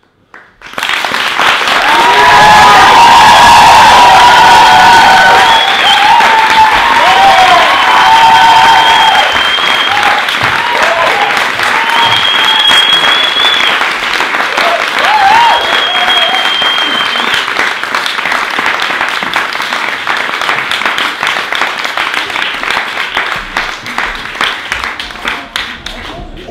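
Theatre audience applauding, starting suddenly about a second in, with cheering voices and long whistles over the clapping through the first half, the applause slowly dying down towards the end.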